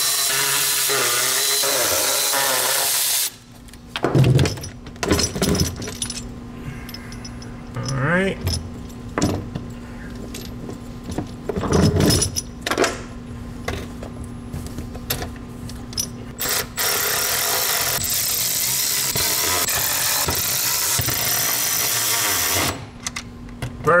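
Cordless electric ratchet running the mounting bolts of a metal pedal box in two runs of a few seconds each, at the start and again late on, with metallic clanks and rattles of the pedal assembly being handled in between.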